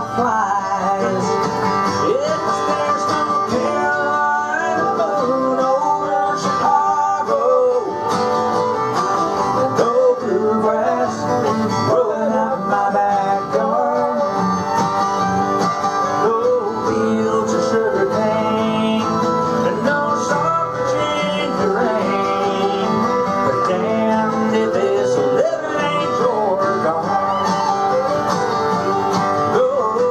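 Live country instrumental passage: a fiddle plays the melody over a strummed acoustic guitar.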